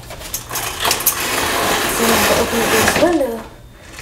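A window being opened: a continuous scraping rattle lasting close to three seconds, then it stops.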